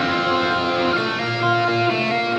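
Live rock band music: guitars playing held, ringing chords with no singing.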